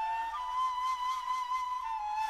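Solo flute holding a long note near 1 kHz, moving to a slightly lower note near the end. It is heard without dynamic EQ, so its loud midrange around 1 kHz goes unchecked and drives the compressor harder.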